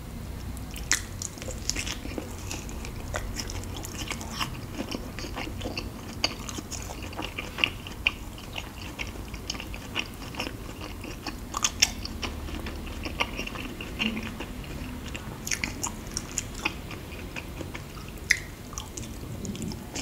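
Close-miked chewing of a soft, creamy fruit piece dipped in white cream: wet, sticky mouth clicks and smacks at irregular intervals, a few louder ones among them.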